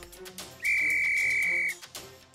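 A single steady high-pitched tone lasting about a second, starting and stopping abruptly, over soft background music.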